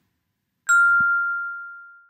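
A single bell-like ding, struck about two-thirds of a second in and ringing on as it slowly fades. A faint low knock follows just after the strike.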